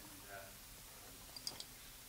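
A quick cluster of two or three sharp, high clicks about a second and a half in, over quiet room tone, with a faint voice near the start.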